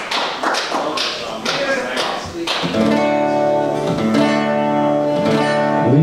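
Acoustic guitar strummed in a steady rhythm, about two strokes a second, joined about three seconds in by a harmonica playing held notes over the strumming.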